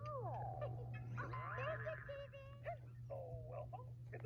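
Cartoon-style sound effects. Sliding tones that fall in pitch open it, a held electronic chord sounds about a second in, and a few short separate notes follow.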